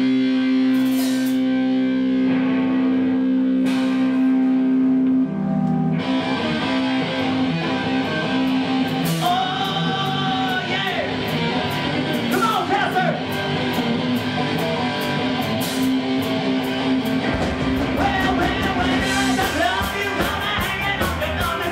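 Live rock band with electric guitar: a held guitar chord rings for about five seconds, then the drums and the rest of the band come in together, with singing over it.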